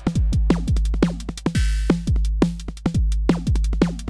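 Synthesized drum-machine pattern from FXpansion Tremor playing at a fast 172 BPM: kicks with falling pitch sweeps, hi-hat clicks and a synthesized snare whose tone is broken up by a small amount of 100 Hz frequency modulation. The snare is velocity-dynamic, so harder hits ring longer.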